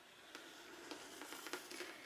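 Faint scratching of a Sharpie marker tracing around the rim of an upturned bowl on a painted canvas, with a few small ticks as the pen and bowl move.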